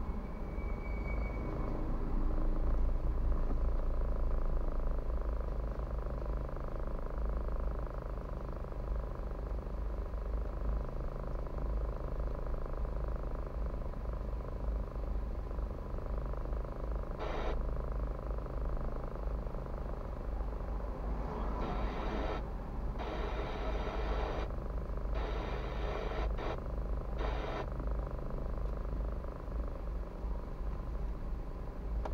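Car engine idling while stopped in traffic, heard from inside the cabin as a steady low rumble with a faint hum. In the second half, a few short rushes of noise come and go.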